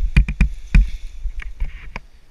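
Irregular sharp clicks and knocks from harness and gear being handled close to the camera, over a low rumble of wind on the microphone. There is no engine running.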